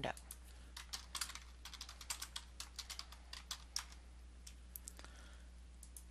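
Faint computer keyboard typing: a quick run of key clicks for about three seconds, over a steady low hum.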